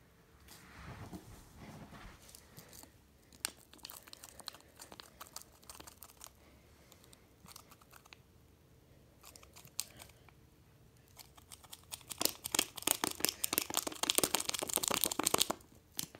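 Small packet of Sea-Monkeys eggs crinkling and rustling as it is handled to shake the last eggs into the tank: scattered faint ticks at first, then dense, louder crinkling over the last few seconds.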